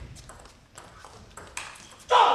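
Table tennis rally: the ball clicking sharply off the rackets and table in a quick run of hits, a few tenths of a second apart.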